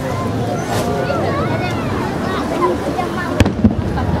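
Crowd of spectators chattering, with two sharp firework bangs in quick succession near the end.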